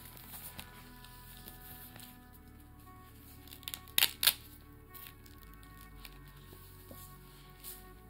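Soft background music, over which a plastic binder full of plastic card-sleeve pages crinkles as it is opened and handled. Two sharp crackles about four seconds in.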